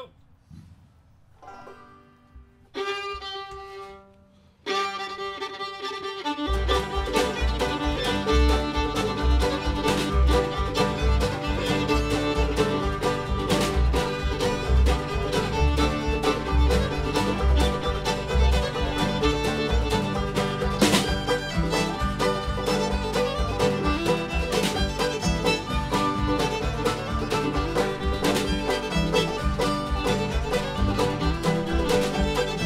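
Jug band playing old-time string band music, led by fiddle with banjo, guitar and washtub bass. After a brief laugh and a few held opening notes, the full band comes in about six seconds in with a steady bass beat.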